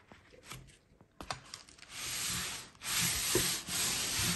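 Paper rustling and scraping as paper-covered moulds are handled and slid over the table, in three bursts of about a second each from about two seconds in, after a few light clicks.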